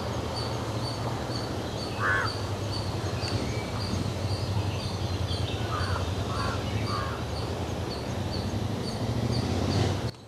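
Birds calling in woodland: one call about two seconds in, then three in quick succession between six and seven seconds, over steady outdoor background noise with a low rumble and a faint high chirp repeating about twice a second.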